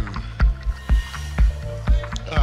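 Minimal techno playing from a DJ mix: a steady four-on-the-floor kick drum about twice a second, with a bass line and ticking hi-hats.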